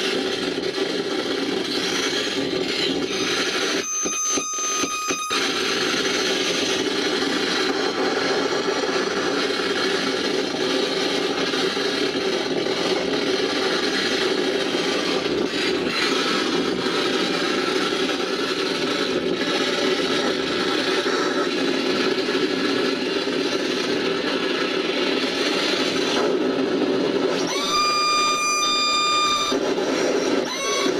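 Live noise-music performance: a dense, unbroken wall of harsh electronic noise and feedback. About four seconds in it briefly drops out around a thin high tone, and near the end a whining feedback tone with overtones slides in over the noise.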